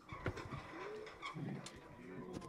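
Faint room sound as a meeting breaks up: low, indistinct murmuring voices and small scattered clicks and knocks of people moving at the tables.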